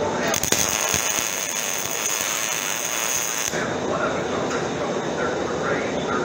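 MIG welding arc crackling steadily for about three seconds as a bead is laid, then stopping.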